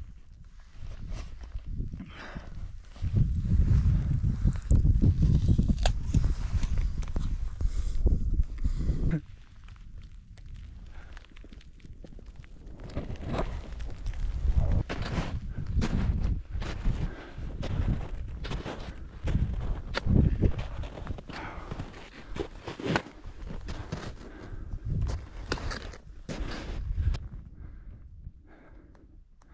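Footsteps in snow and on rock, roughly one a second, in the second half. Before that comes a loud low rumble on the microphone lasting several seconds.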